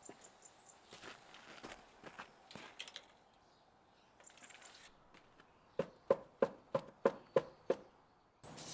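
Faint rustles and small clicks of a tape measure being handled, then about seven quick, even footsteps on gravel near the end.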